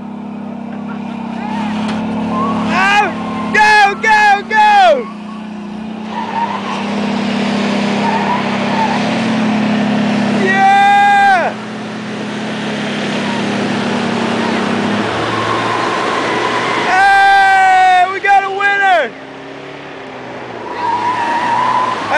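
Pickup truck engine held at high revs under heavy load, its rear tyres spinning in loose sand with a steady rushing spray of dirt. The low engine drone eases off about two-thirds of the way through while the tyre noise goes on.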